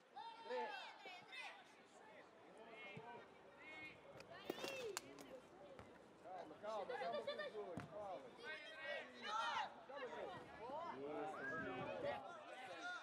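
Young footballers and spectators shouting and calling out over each other during play, in high-pitched voices with no clear words. A few sharp knocks of the ball being kicked come a little before the middle, and one more after it.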